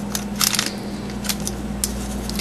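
A paper packet of Equal sweetener being torn open and handled: a few small crisp clicks and rustles, busiest about half a second in.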